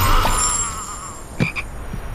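A toad croaking: one short call about one and a half seconds in, after a sound that fades out in the first half second.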